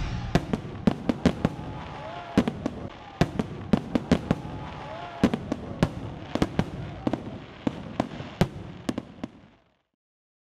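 Fireworks: irregular sharp bangs and crackles, sometimes several a second, over a steady noisy rumble, fading out shortly before the end.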